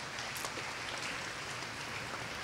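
Steady applause from a hall audience welcoming new teachers.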